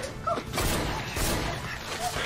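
Two sudden crashing bangs, about half a second apart, each trailing off briefly.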